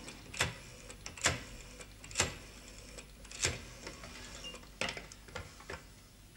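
Rotary telephone being dialled: a series of sharp mechanical clicks, about one a second.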